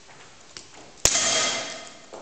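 A single sharp bang about a second in, followed by metallic ringing that dies away over about a second, typical of a shot on a pistol range.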